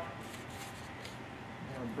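Faint rustling of a thin die-cut carbon fiber sheet being flexed and handled by hand, over quiet room tone.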